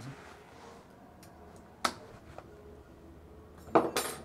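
Light metal clicks from a reciprocating saw's tool-free blade clamp being worked, then a saw blade clattering down onto a wooden workbench with a brief metallic ring near the end.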